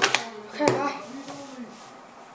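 Brief voice in the first second, with a couple of light clacks of plastic speed-stacking cups as the hands set the stacks in place; quieter in the second half.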